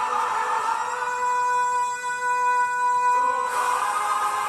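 Male crossover vocal group singing with orchestral backing; about a second in the sound thins to one voice holding a single long high note, and the full music returns just after three seconds.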